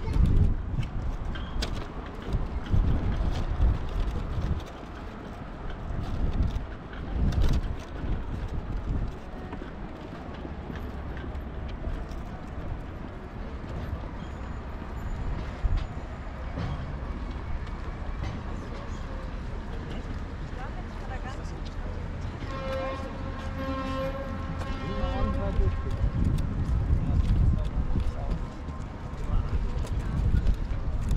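Outdoor waterfront ambience heard while walking: uneven low thuds from footsteps and the moving camera, then a steady low drone. About 23 seconds in, a held pitched tone with a clear series of overtones sounds for about three seconds.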